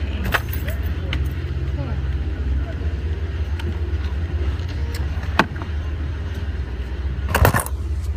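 Off-road vehicle running with a steady low engine rumble while it crawls the trail, with sharp knocks and rattles every few seconds; the loudest cluster of knocks comes about seven and a half seconds in.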